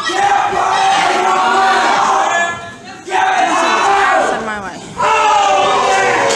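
Wrestling spectators yelling in long, drawn-out shouts, three bursts of a second or two each, with the crowd behind them.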